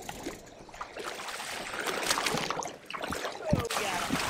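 Water splashing and churning as a hooked swordfish thrashes at the side of the boat, getting louder after about a second, with a brief lull before the end.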